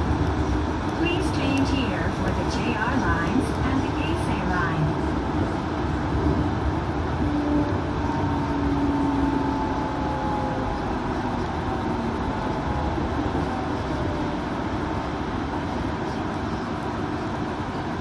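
Nippori-Toneri Liner 330-series rubber-tyred automated guideway train running along its concrete guideway, heard inside the car: a steady rumble of tyres and running gear. A motor whine slowly falls in pitch around the middle.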